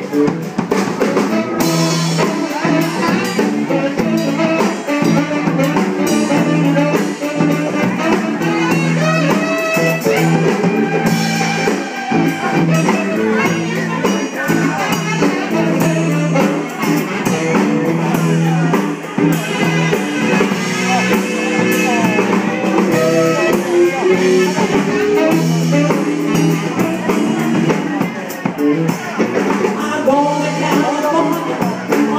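Live blues band playing: drum kit, electric bass, electric guitar and saxophone, loud and steady throughout.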